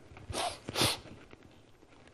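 Two short hissing noises in quick succession, about half a second and one second in.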